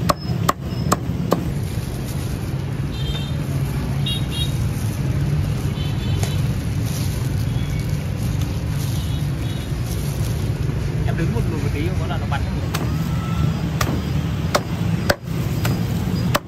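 A meat cleaver chopping roast goose on a thick wooden chopping block: a few sharp knocks in the first second or so and a few more near the end, over a steady low rumble.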